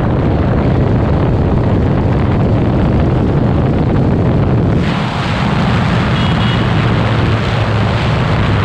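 KTM RC 390's single-cylinder engine pulling at high road speed, with heavy wind rush on the microphone. About five seconds in, the engine note drops as the throttle is rolled off and the bike slows, and the wind hiss grows brighter.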